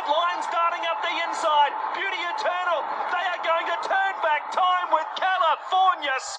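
Horse-race commentator calling the finish of a race, a fast, unbroken stream of speech.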